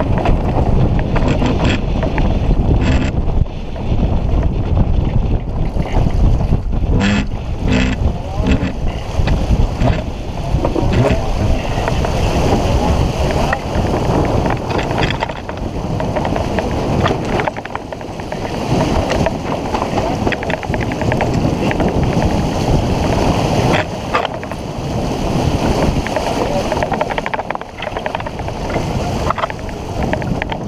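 Wind buffeting the microphone of a camera on a sailboat under way, with choppy water rushing along the hull. The noise is a loud, uneven rumble that rises and falls with the gusts.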